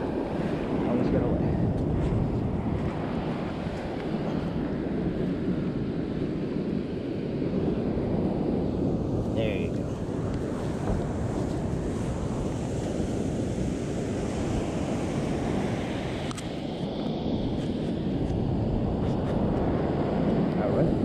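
Ocean surf breaking and washing up a sandy beach, a steady rushing noise, with wind buffeting the microphone.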